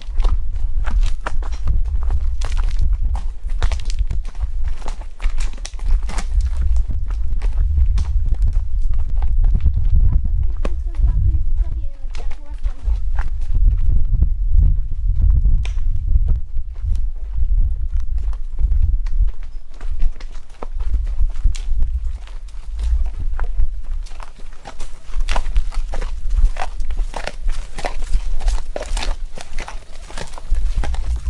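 Horses walking on a dirt and stone trail: irregular hoof clip-clop and knocks, over a constant low rumble of movement and wind on the microphone.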